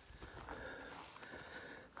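Faint footsteps of a person walking on a rocky dirt trail through tall grass.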